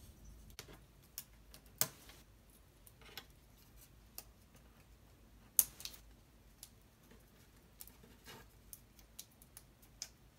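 Laser-cut plywood puzzle pieces being handled on a wooden table: faint, scattered light clicks and taps, with two louder clicks about two seconds and five and a half seconds in.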